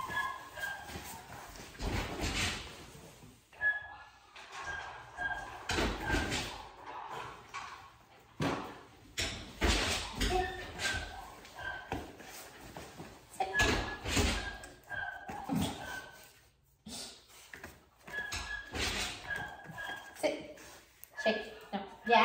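Irregular knocks and thumps of movement on foam floor mats as the trainer and puppy shift about, with short high squeaks in runs of three or four.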